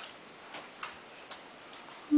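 A few faint, short clicks, irregularly spaced, over a low background hush.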